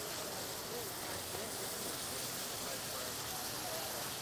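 Ground meat sizzling steadily as it browns in a hot skillet on an induction cooktop, with faint crowd chatter behind.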